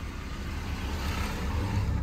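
Mercedes W126 engine idling, a steady low rumble heard from inside the car, with a hiss on top that swells about a second in.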